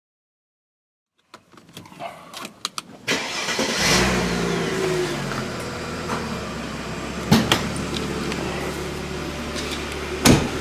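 Mercedes W210 E-Class engine starting about three seconds in, then idling steadily. Before it, a few light clicks; there is a sharp knock about halfway through.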